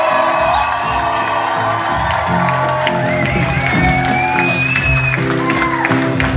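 Live music: a steady bass line in held low notes, with sustained, gliding sung notes over it and some cheering from the audience.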